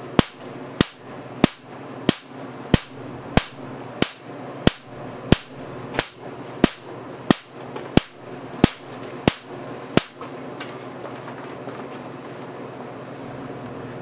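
Marx generator firing repeatedly, its spark cracking across a seven-inch electrode gap through plain-water mist about every two-thirds of a second. The cracks stop about ten seconds in, leaving a steady low hiss.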